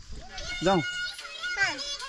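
Speech: a few short spoken words, with a child's voice among them.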